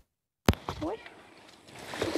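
A recording splice: a click, about half a second of dead silence, then a second click. After it comes faint outdoor background with a brief faint voice fragment near the one-second mark.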